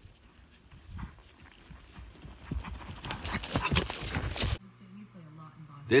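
Hoofbeats of a ridden horse coming through dry grass, growing louder as it approaches, then cut off abruptly about four and a half seconds in. A low steady hum follows.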